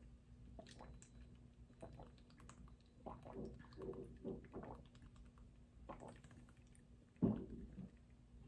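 A person drinking from a small plastic bottle: a run of faint gulps and swallows about three seconds in, then one louder swallow near the end.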